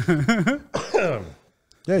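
Men laughing briefly, then a man clearing his throat about a second in.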